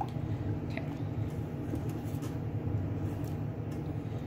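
A few faint taps and scrapes of a silicone spatula stirring glaze in a stainless steel saucepan, over a steady low hum.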